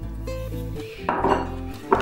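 Background music with steady plucked-string notes, with a short rattle about a second in and a light knock of kitchenware just before the end.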